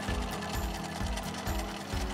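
Bernina domestic sewing machine running, stitching a dress seam, under background music with a steady beat.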